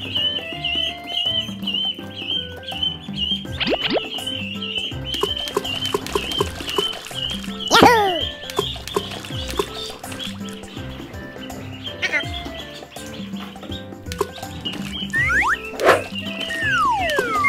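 Background music with a steady bright melody, with a rising whistle-like glide about four seconds in and a louder falling glide about eight seconds in.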